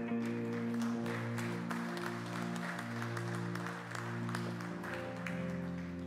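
Audience applauding over the band's held, sustained chords; the clapping dies away near the end as the chords shift.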